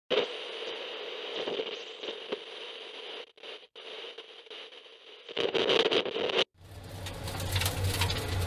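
Crackling, hissy static-like noise, louder for about a second near the end and then breaking off; a steady low hum starts in the last second and a half.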